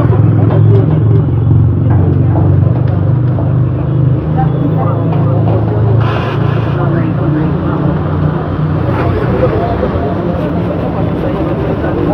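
A motor vehicle engine running close by, loud for the first eight seconds or so and weaker after that, with people talking over it.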